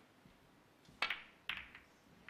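A snooker shot: the cue tip taps the cue ball, then ivory-hard balls click together, two sharp clicks about half a second apart, as the black is potted and the cue ball runs into the reds.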